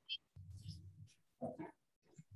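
Faint, muffled voice over a video-call line, likely a student answering the roll call: a low drawn-out sound, then a short word about one and a half seconds in.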